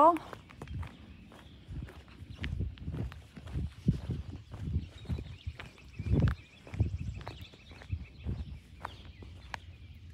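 Footsteps of a person walking on rough asphalt: irregular low scuffing steps, roughly one or two a second, one heavier step about six seconds in.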